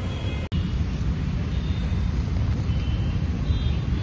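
Steady low rumble of city road traffic outdoors, with a few faint thin high tones above it; the sound drops out briefly about half a second in.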